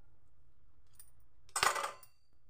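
A short metallic clatter on a stainless-steel bowl near the end, with a faint ring after it, as a potato is cut with a knife over the bowl. A faint tick comes about a second in.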